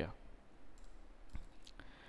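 A few quiet computer mouse clicks, the clearest two close together about a second and a half in, against faint room tone.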